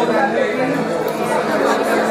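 Many people talking at once around the tables: a steady babble of overlapping conversation.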